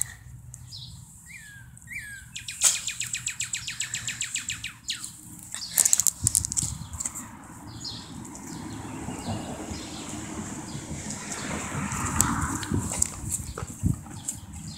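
Quiet outdoor sounds: two short falling chirps near the start and a brief fast rattling trill. These are followed by several seconds of rustling and brushing as the phone and feet move over grass.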